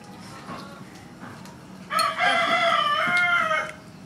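A rooster crowing once, a single crow of nearly two seconds starting about halfway through.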